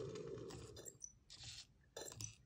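Emo desktop robot's sound effect for its demon-eyes animation fading out: a soft rushing noise dies away over about the first second, followed by a couple of faint short noises.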